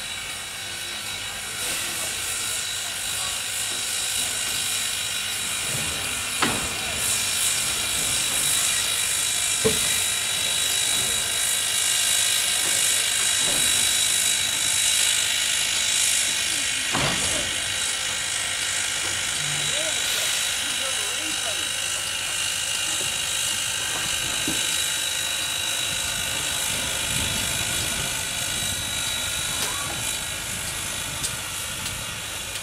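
Reading & Northern 4-6-2 Pacific steam locomotive No. 425 hissing steam steadily while it is turned on a turntable, with a steady high whine over the hiss and a few light clicks.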